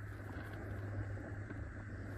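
Faint steady low hum under quiet outdoor background noise.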